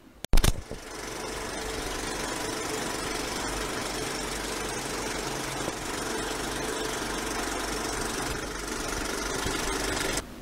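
Intro sound design: a sharp hit right at the start, then a steady rumbling drone with a low hum underneath.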